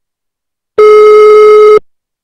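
Telephone ringback tone down the line: a single steady beep about a second long, starting about a second in, the sign that the called number is ringing.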